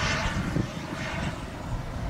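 Model turbine jet engine of an HSD Jets T-45 Goshawk RC jet in flight, a steady rushing whoosh with no distinct pitch.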